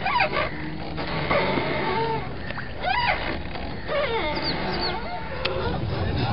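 Birds calling: a series of short, rising-and-falling calls every second or so over a steady low rumble.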